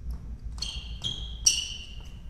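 Sports shoes squeaking on a wooden badminton court floor as players move in a rally: three short high squeaks about half a second apart, the last and loudest starting with a sharp hit.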